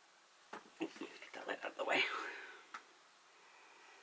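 A woman speaking softly, half-whispered, under her breath for about two seconds, followed by a single faint click.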